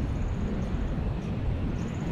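Steady rushing noise with a low rumble from a fast-flowing river in a deep gorge.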